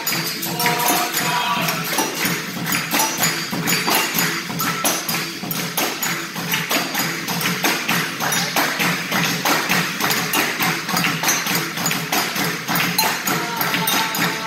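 Capoeira roda music: an atabaque hand drum and a pandeiro tambourine played in a steady rhythm, with the ring of players clapping along.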